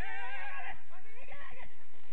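Players shouting across a football pitch: a loud, high, wavering yell in the first moment, then shorter calls about a second in, with a few dull thumps.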